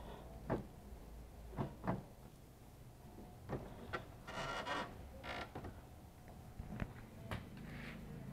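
Chevrolet Celta door window glass being handled: a few sharp knocks and clicks, with a short scraping rub of glass against the door channel about four to five seconds in. The glass is faulty and has slipped out of its rubber channel.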